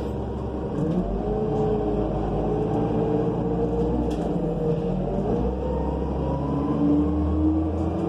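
Cummins Westport C Gas Plus natural-gas engine of a New Flyer C40LF bus heard from inside the rear of the cabin as the bus pulls away and accelerates. The engine note starts rising about a second in, dips briefly a little past halfway as the Allison automatic transmission shifts up, then climbs again.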